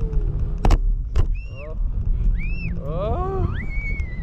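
Wind buffeting the microphone with a steady low rumble, broken by two sharp knocks about a second in. Then high-pitched vocal whoops from the parasail riders, rising and falling in pitch, ending on a held high note.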